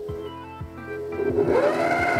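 Mito MX100 stand mixer's motor starting on speed one about one and a half seconds in, its whine rising and then holding steady as the wire whisk begins to spin. Soft background music with a steady beat is heard before it starts.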